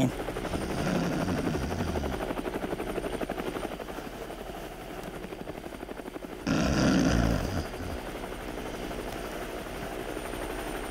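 Helicopter rotor sound effect: a steady, fast chopping. A louder swell about six and a half seconds in lasts roughly a second.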